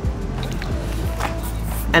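Background music with steady sustained tones, over the rolling noise of bicycle tyres on asphalt.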